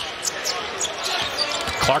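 Basketball being dribbled on a hardwood court during live play, over a steady hum of crowd noise.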